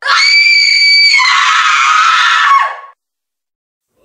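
A loud, high-pitched scream lasting about three seconds. It is held on one pitch for about a second, then turns rougher and a little lower before cutting off abruptly.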